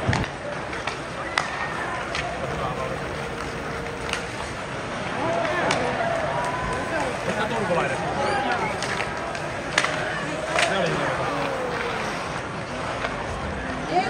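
Ice hockey arena heard from the stands: steady crowd chatter, with a series of sharp clacks of sticks and puck at irregular intervals, the loudest a little after halfway.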